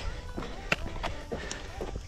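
Footsteps and trekking-pole clicks on a rocky mountain trail during a steep uphill climb, with a sharp click about two-thirds of a second in, over a low wind rumble on the camera microphone. Faint background music plays underneath.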